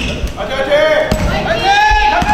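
A basketball being dribbled on a hardwood gym floor: a few dull bounces, under voices echoing in the large hall.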